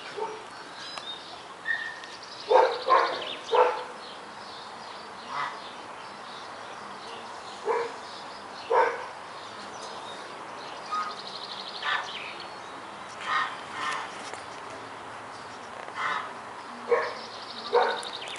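A dog barking on and off, in single barks and pairs every few seconds, loudest in a quick run of three barks a couple of seconds in.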